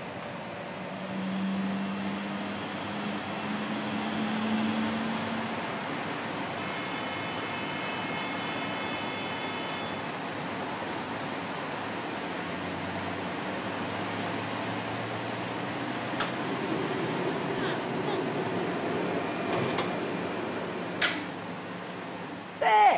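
CT scanner running a scan: a steady mechanical noise with high whining tones that come and go, and a sharp click shortly before the end.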